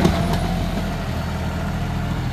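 John Deere 5050D tractor's three-cylinder diesel engine running steadily as it pulls a heavily loaded soil trolley, with a couple of short knocks right at the start.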